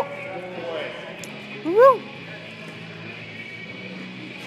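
A spectator's shout of encouragement about two seconds in, one call rising then falling in pitch, over the steady hum and murmur of a large gym hall.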